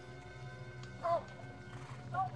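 A horse whinnies briefly about a second in, over a steady dramatic music score.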